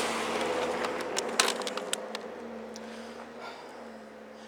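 A few sharp clicks and knocks in the middle, as the handlebar-mounted camera is handled and turned, over a steady rushing noise that slowly fades.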